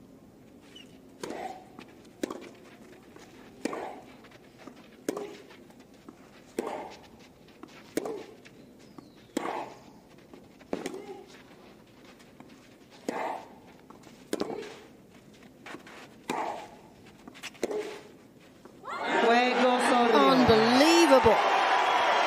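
Tennis rally on clay: about a dozen racket strikes on the ball, roughly one every second and a half, most with a short grunt from the player hitting. Near the end the point finishes and the crowd cheers loudly.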